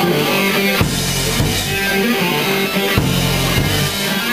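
Live band playing an instrumental passage with guitar, bass and drums, without vocals.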